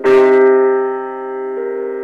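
Jazz piano music: a loud chord is struck at the start and rings out, fading, with the notes changing about one and a half seconds in.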